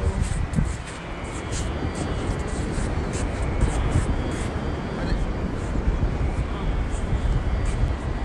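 Steady outdoor rumble of wind and breaking surf on an open beach, with short hissy gusts throughout.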